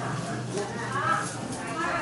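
Indistinct voices of several people talking some distance away, over steady outdoor background noise.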